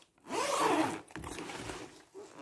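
Zipper on a padded fabric fishing-rod case being pulled along. One quick, louder run in the first second has a buzz that rises and falls in pitch. A quieter, slower rasp follows.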